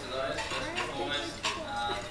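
Cutlery and dishes clinking, with a few sharp clinks, over a murmur of many voices talking at once in a crowded function room.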